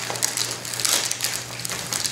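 Scratchy rustling and crinkling of pack fabric and packaged snack bars as a hand rummages in a backpack's top lid pocket, with small irregular clicks.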